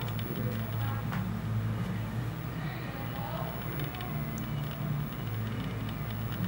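A steady low hum, with faint, indistinct voices now and then.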